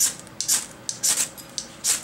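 A Gerber fire starter's striker scraped along its ferrocerium rod, throwing sparks: four short, sharp scrapes about half a second apart, with small clicks between them.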